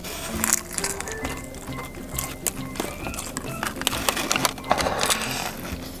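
Background music with held notes, over short crackly crunches and chewing as a crisp-battered fried chicken drumstick is bitten and eaten.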